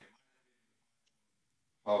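Near silence: a pause in a man's speech, with his voice trailing off at the very start and resuming just before the end.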